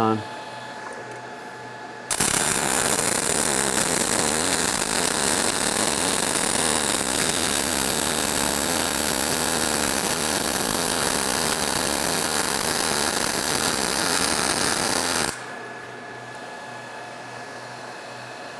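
MIG welding arc from an ESAB Rebel 235 on its sMIG program with .045 wire, struck about two seconds in and running steadily for about thirteen seconds before cutting off. At about 16 volts and 220 amps the arc sounds okay but is nowhere near spray transfer.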